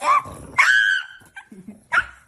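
A pug gives two high-pitched whines: a short one rising at the start, then a louder, longer, steady one about half a second in.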